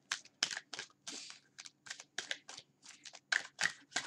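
A deck of tarot or oracle cards shuffled by hand: a quick, irregular run of short papery flicks and slaps as the cards are shuffled before one is drawn.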